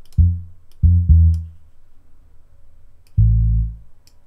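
Single low bass notes from a software bass instrument in Logic Pro X, each sounding as a note is clicked into or dragged on the piano roll: one short note at the start, two quick notes about a second in, and a longer held note near the end. Faint mouse clicks fall between them.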